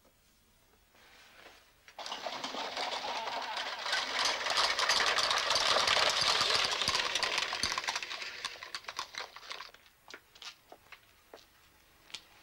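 A dense rustling, crackling noise that starts suddenly about two seconds in, swells, then thins out near the end into scattered separate clicks and snaps.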